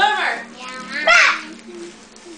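Two short bursts of a child's high, squeaky laughter, one at the start and one about a second in, the voice altered by helium breathed from a balloon.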